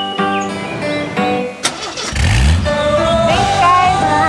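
Background music with a short knock, then a Jeep's engine starting and revving up about two seconds in.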